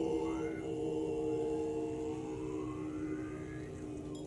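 Tibetan Buddhist monks chanting in low, sustained voices, several held tones sounding together without a break.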